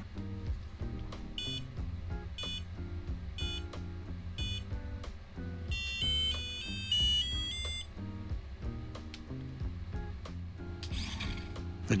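Electronic buzzer start-up beeps from the Crowbot Bolt kit as the joystick controller comes on: four short high beeps about a second apart, then a quick little tune of beeps. Soft background music plays underneath.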